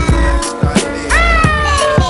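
Hip hop beat playing without vocals: a drum kit with kick drum and hi-hats over deep bass notes. About a second in, a high pitched sound slides up quickly and then falls slowly.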